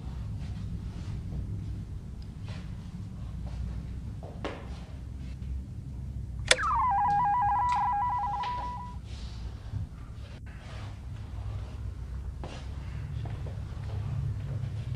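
A handheld push-button buzzer clicks and then gives an electronic ring: a quick drop in pitch, then a rapid warble between two tones for about two and a half seconds.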